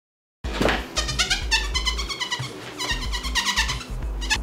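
After a short silence, a high-pitched voice-like sound in a quick run of short notes that bend up and down in pitch, over a low steady hum.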